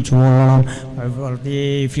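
A man's voice intoning a prayer in a chanting, sung style. It holds a long steady note near the start and a second, shorter held note near the end, with a softer wavering stretch between them.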